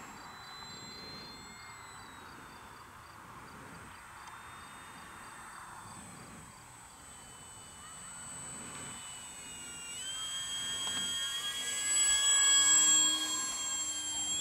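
Electric RC warbird (3S brushless motor and propeller) on a low pass. It is faint at first, then its high whine grows loud about ten seconds in as the plane comes close, peaks, and eases slightly near the end.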